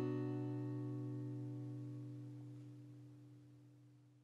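The final strummed chord of an acoustic guitar ringing out and slowly dying away, fading to almost nothing by the end.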